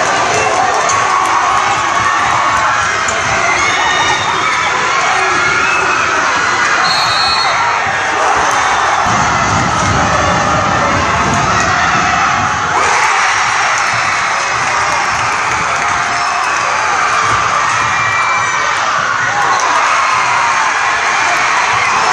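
Gymnasium crowd of basketball fans cheering and shouting without a break.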